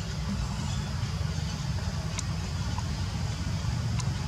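Steady low outdoor rumble, with one brief high chirp about two seconds in.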